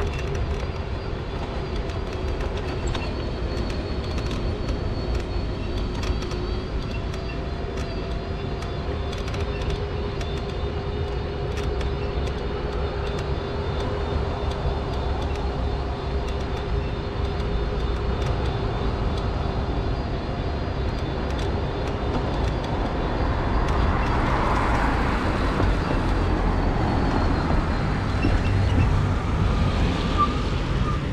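Mobility scooter's electric drive humming steadily with a low rumble of its wheels over snowy paths. Near the end a passing road vehicle's noise swells up and fades.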